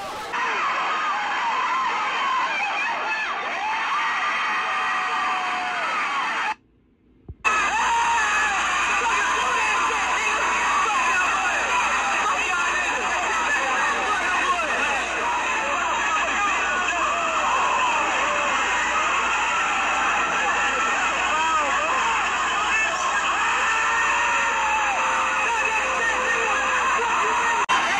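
Basketball gym crowd: many voices shouting and cheering at once, with no single voice standing out. The sound cuts out for under a second about six and a half seconds in.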